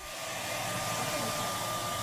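Hair dryer running steadily: a rush of air with a faint high whine, fading in over the first half second.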